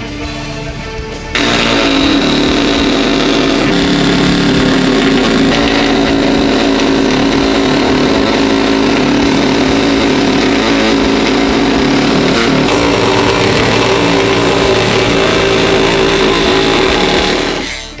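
Corded oscillating multi-tool cutting through a sheet of drywall: it starts suddenly about a second in and runs steadily at one pitch until it stops just before the end. Background music is heard before it starts.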